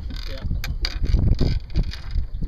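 Fishing pliers snipping the barb off a stingray's tail: a sharp click a little over half a second in, over wind buffeting the microphone.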